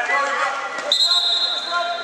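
A referee's whistle is blown once, a steady shrill tone about a second long starting halfway in. It sounds over spectators' voices and a ball bouncing in a large sports hall.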